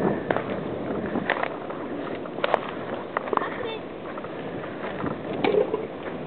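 Footsteps rustling and crunching through dry leaf litter, with scattered sharp snaps of twigs. Brief voice sounds come through faintly twice.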